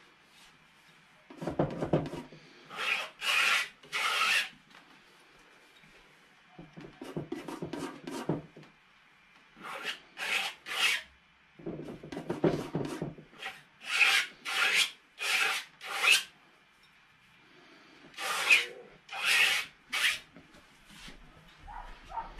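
Steel palette knife scraping and mixing oil paint on a palette: short scraping strokes in groups of three or four, with duller rubbing sounds between them.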